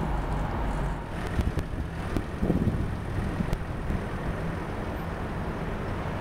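Steady outdoor traffic noise with wind on the microphone.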